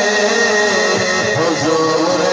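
A man singing a naat into a microphone over a PA system, holding long notes that waver slowly in pitch.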